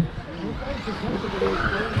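Electric 4WD RC buggies racing on a dirt track: their motors whine, rising and falling in pitch, and the tyres scrabble on the hard-packed surface. Faint voices run underneath.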